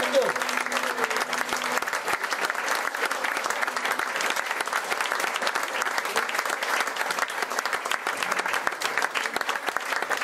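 Audience applauding at the end of a song, steady throughout, while the last guitar chord rings out and dies away over the first two seconds.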